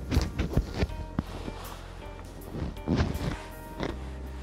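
Stretchy fabric neck tube (a Buff) rustling and scuffing against the body-worn microphone as it is pulled up around the neck, loudest in the first second and again about three seconds in. Quiet background music with held notes runs underneath.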